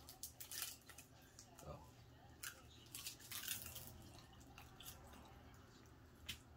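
Faint scattered clicks and small crackles of food being handled at a table, with a brief spoken "oh" a little under two seconds in.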